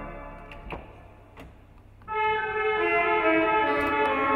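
Organ music: a chord fades away in the church's reverberation, with a couple of faint clicks in the near-silent gap, then about halfway through a new passage starts on sustained held notes.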